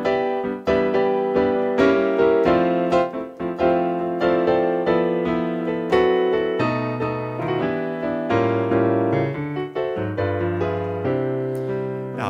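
Roland Fantom synthesizer keyboard playing its acoustic piano patch, both hands striking a continuous run of jazz chords with a moving bass line beneath.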